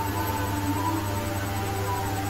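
A steady low hum with faint held tones above it.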